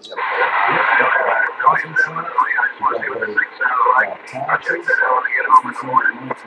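A station's voice coming in over a CB radio receiver, thin and narrow-sounding with a bed of static hiss behind it. The transmission opens abruptly at the start and cuts off just after the end.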